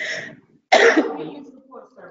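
A person clearing their throat: one harsh, sudden burst about two-thirds of a second in that dies away over most of a second.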